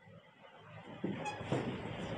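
Near silence, then about a second in a faint rustle with a couple of small clicks begins: a man shifting and walking, his clothing brushing against a clip-on microphone.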